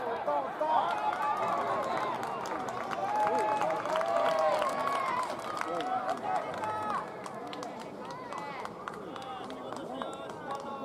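Several young players' voices shouting and calling out across a baseball field, overlapping, loudest for the first seven seconds and then fading, with scattered sharp clicks.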